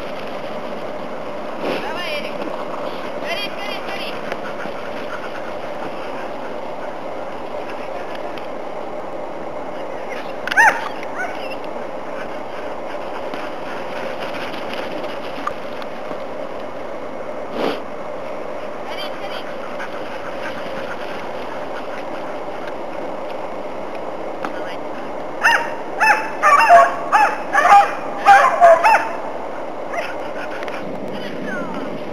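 Groenendael (Belgian Shepherd) dogs barking: a single sharp bark about ten seconds in, then a quick run of about eight loud barks near the end, over a steady rushing background noise.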